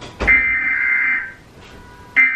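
Emergency Alert System data burst played through a TV: a harsh, buzzy electronic warble about a second long, then a short gap before the next identical burst starts at the end.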